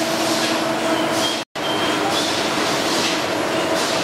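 Steady machinery noise of a hard-candy production line: a constant hum with a hiss that swells and fades every second or so. The sound cuts out completely for an instant about one and a half seconds in.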